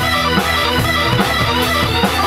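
Live band playing mid-song, loud and unbroken, with electric guitar to the fore over the rest of the band.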